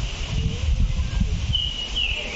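Outdoor ambience dominated by an irregular low rumble on the microphone, with a brief high bird-like whistle near the end.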